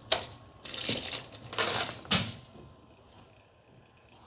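Four short bursts of rattling, clattering handling noise in the first two and a half seconds, then only faint room tone.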